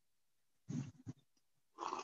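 A horse snorting softly: a few short puffs of breath through the nostrils, about a second in and again near the end. This is the kind of snorting that people who work with horses read as the horse releasing tension.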